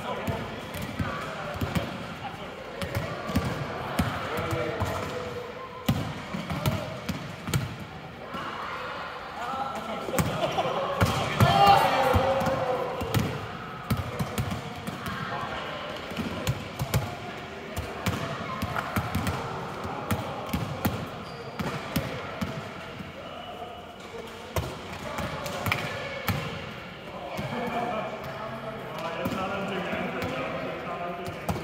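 Volleyballs being set, spiked and bouncing on a sports hall floor: a scattered run of sharp smacks and thuds from several balls at once, over players' voices calling across a large hall.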